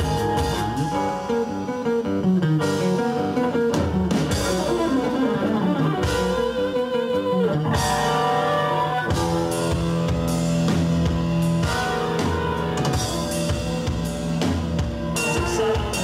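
Avant-rock band playing live, with flute over electric guitar, bass and drums in fast, intricate interlocking lines. About eight seconds in, the music changes to long sustained notes and chords.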